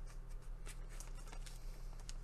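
Small clear plastic bag of safety pins being worked open with the fingers: faint, irregular crinkling and clicking of the plastic.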